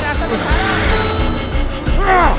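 Action-film score music with a low pulsing beat, with brief shouts of men's voices over it.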